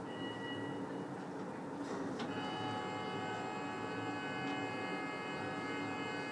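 Lift-station machinery of a Doppelmayr detachable chair-and-gondola lift running with a steady low hum. About two seconds in, a steady high whine of several tones joins and holds.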